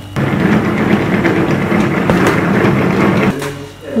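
Hand-operated food chopper running, its blades churning through a bowl of finely chopped green seasoning: a dense, steady noise that starts suddenly and stops a little before the end.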